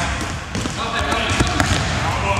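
A basketball bouncing on a gym's hard floor during play, a few separate bounces.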